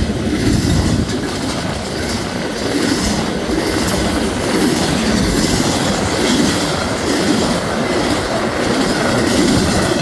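Loaded double-stack intermodal well cars of a fast freight train rolling past at speed: a steady, loud rumble of steel wheels on rail, with the wheels clicking over the rail joints.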